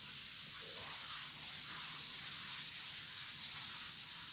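Chalkboard eraser rubbing across a blackboard in repeated scrubbing strokes, a dry hiss of felt on slate.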